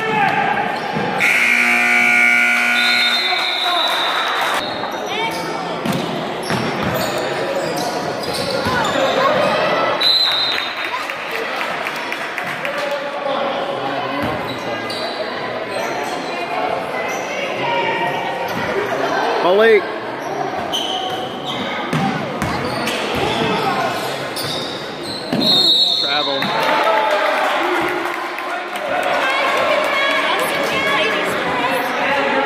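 Basketball game sounds in an echoing gym: a ball bouncing on a hardwood floor, sneakers squeaking and spectators talking and calling out. A short steady horn-like tone sounds about a second in.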